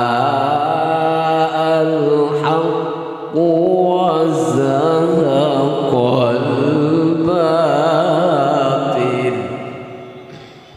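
Young male qari reciting the Quran in a high voice through a microphone, in long drawn-out melismatic phrases with wavering ornaments. One phrase ends about three seconds in and a new one starts at once; the voice fades out near the end.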